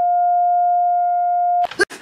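A digital alarm clock's electronic alarm: one continuous, steady beep that cuts off suddenly near the end, after which a voice starts speaking.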